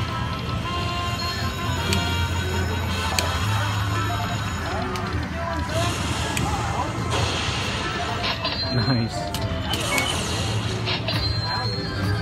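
Lightning Link slot machine playing its electronic music and chimes after a free-spin bonus ends, with the bonus win starting to count up near the end. Casino-floor chatter and other machines' sounds run steadily underneath.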